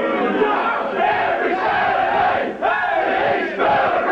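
A team of Australian rules footballers in a linked-arm huddle shouting and singing their club song together after a win: many male voices bellowing in unison, with a brief break about two and a half seconds in.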